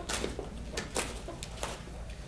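Several sharp clicks and light knocks as a rugged tactical computer module and its sealed circular military connectors are unplugged by hand and lifted off their mount on a plate carrier vest.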